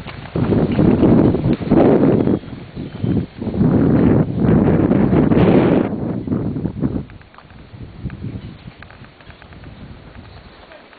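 Wind buffeting a handheld camera's microphone in loud, uneven gusts that die down after about seven seconds.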